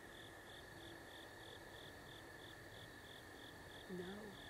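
Faint night insects: a cricket-like chirp repeating evenly about four times a second over a steady high trill.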